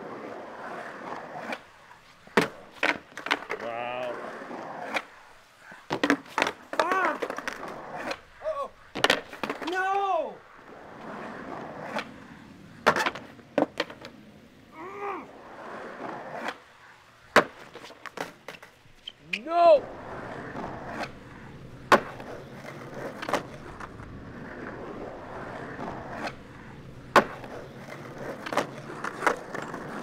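Skateboard on concrete: wheels rolling, broken by many sharp cracks of the board popping, landing and clattering on the ground.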